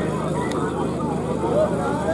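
Murmur of many voices from a seated crowd of spectators, over a steady low hum.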